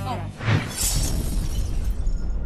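Television transition sound effect: a sudden crash like shattering glass about half a second in, over a deep low rumble that carries on to the end.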